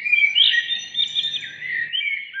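Birds chirping: a continuous stream of short, high chirps and quick pitch glides.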